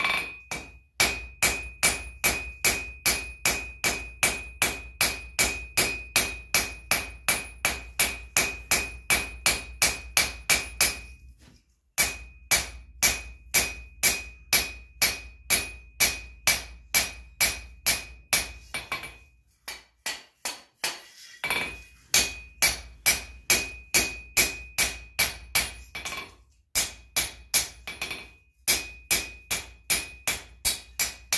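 Blacksmith's hand hammer striking hot steel on an anvil in a steady rhythm, about three blows a second, each blow ringing from the anvil. The blows come in runs, broken by short pauses about 12 and 20 seconds in and twice near the end.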